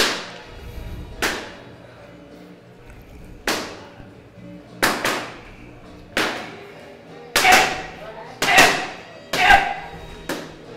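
Boxing gloves smacking into focus mitts in pad work: a sharp crack on each punch, echoing off hard walls. Single shots about a second or two apart, then quick two-punch combinations coming closer together toward the end.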